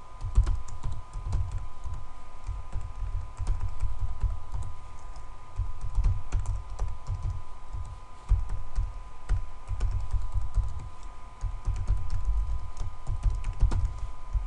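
Typing on a computer keyboard: quick runs of keystrokes with short pauses between them, each key a click with a dull thud. A faint steady whine runs underneath.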